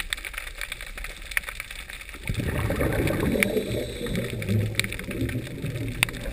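Underwater sound in a camera housing: faint scattered clicks, then from about two seconds in a bubbly, gurgling rumble of water that carries on, fading somewhat, to the end.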